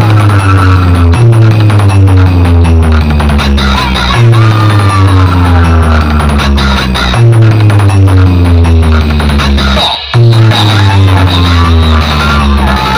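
Electronic dance music played very loud through a giant DJ loudspeaker stack, dominated by heavy bass notes, with falling-pitch tones that repeat about every three seconds. The sound drops out for a moment near the ten-second mark.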